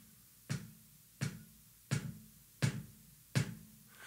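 Kick drum struck with a bass drum pedal in flat-foot technique: five single strokes at an even, unhurried pace, a little faster than one a second. Each is one clean hit with no bounce or double from the beater.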